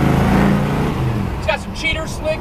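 Supercharged 406 small-block V8 with a 6-71 BDS blower running under way, heard from inside the car. Its note rises a little and then eases off just over a second in, as a man's voice starts.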